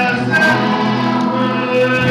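Music with a choir singing sustained notes, in a gospel style.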